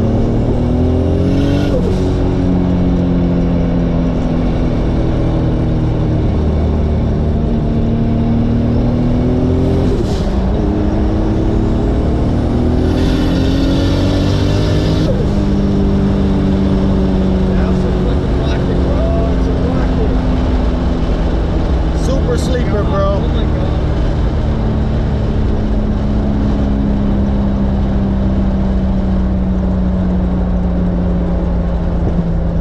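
Turbocharged 2JZ-GTE inline-six in a 1996 Lexus SC300, heard from inside the cabin. The revs climb and drop sharply back three times as the car is worked through the gears of its six-speed. For the second half the engine runs steadily at lower revs.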